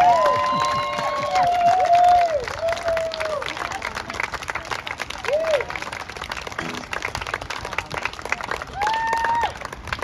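Small audience applauding with scattered cheering whoops, the clapping loudest in the first few seconds and then thinning out.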